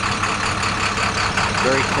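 Diesel engine of a 2011 International 4300 truck idling steadily, an even low hum.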